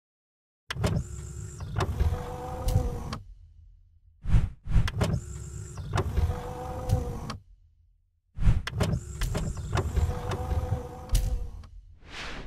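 A mechanical whirring with a steady whine and sharp clicks, heard three times in near-identical runs of about three seconds, with short pauses between.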